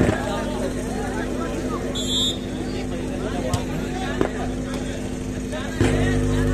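Crowd of spectators chattering at an outdoor volleyball match, with a short high whistle about two seconds in and a few sharp smacks of the ball being played. A steady electrical hum from the public-address system grows louder near the end.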